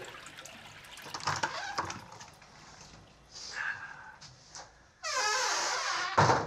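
Bathroom sink tap turned on about five seconds in, water running loudly and steadily into the basin, after a few faint small clicks.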